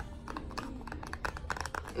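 Fingers tapping lightly and quickly on a small object, ASMR-style: a fast, irregular string of soft clicks.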